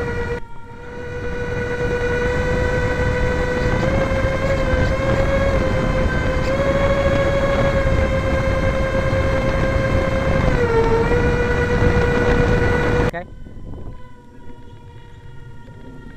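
Four 55 mm electric ducted fans of an RC C-17 model whining at a steady pitch, heard from a camera on the airframe, with heavy wind rush over it; the pitch steps up slightly and dips once. Near the end the sound cuts abruptly to a fainter, thinner whine of the fans heard from the ground.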